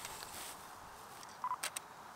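Nikon Z5 mirrorless camera giving a short beep, then its shutter firing with a quick double click as it takes a close-up shot.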